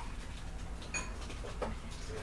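A few faint clicks and squeaks from food packaging being handled, a plastic container lid and a foil seasoning packet, over a low steady room hum.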